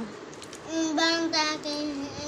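A young boy's voice in long, drawn-out sing-song tones, starting a little under a second in.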